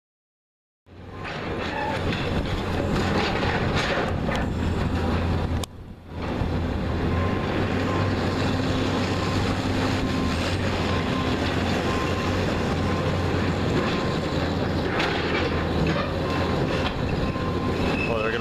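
Diesel engine of a John Deere tracked excavator running under load as it pulls down a steel entrance canopy, with continuous metal scraping and clanking. It starts about a second in, drops out briefly around six seconds, and has louder crunches of steel about four seconds in and again near fifteen seconds.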